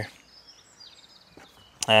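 Quiet outdoor background with faint, high bird chirping. A man's voice stops at the start and starts again near the end.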